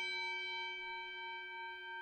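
A single struck bell ringing out, its tone fading slowly.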